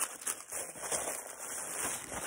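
Tissue paper rustling and crinkling as hands unwrap a package.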